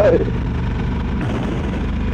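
A motorcycle engine running steadily at road speed, with wind and road noise on the microphone. A brief exclamation of "wow" comes at the very start.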